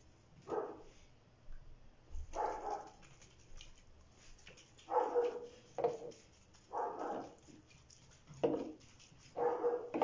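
A dog barking, about seven single barks spaced a second or two apart.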